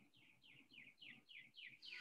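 A bird chirping faintly in a quick run of short, falling chirps, about four a second, that stops just before the end.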